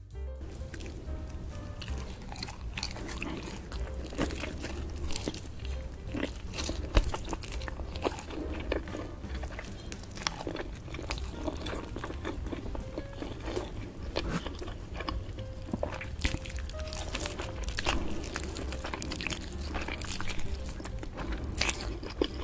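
Close-miked eating of a whole roast chicken: meat and skin torn from the bone by hand and chewed, with many small wet clicks and crackles, over soft background music.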